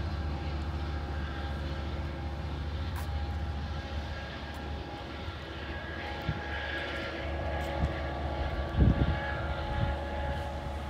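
Steady low drone of a Metrolink train's diesel locomotive engine as the train approaches from a distance, with several steady pitched tones over the rumble. A few low thumps near the end.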